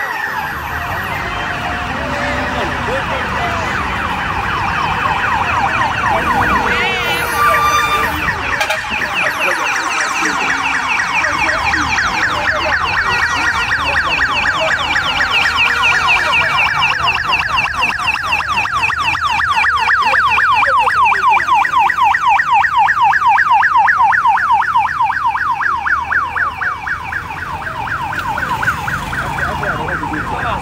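Vehicle siren sounding a fast yelp, its pitch sweeping up and down rapidly and without a break, over low traffic noise; it grows louder about two-thirds of the way in, then eases slightly near the end.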